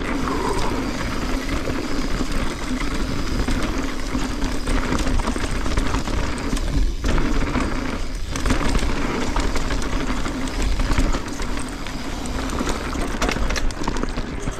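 Mountain bike riding fast down a dry dirt trail: continuous tyre noise on the dirt with a low rumble, and rattling and clattering from the bike over the rough ground. The noise drops briefly twice, about halfway through.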